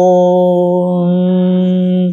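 A man chanting a Sanskrit invocation, holding one long, steady note on the closing syllable until it stops just after the end.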